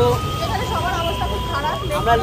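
A man talking over the rumble of a busy street with traffic.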